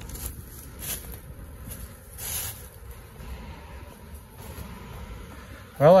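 Footsteps crunching on dry fallen leaves, a few soft crunches about a second and a half apart, over a low steady rumble.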